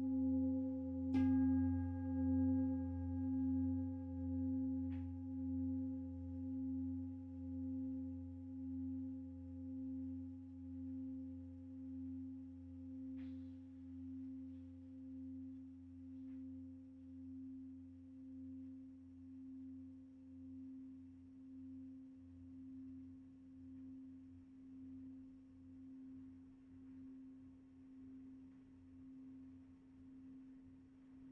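Large singing bowl struck once with a mallet about a second in, then ringing on in a long, slow fade with a low hum that pulses in a steady wavering beat. A few faint ticks come later.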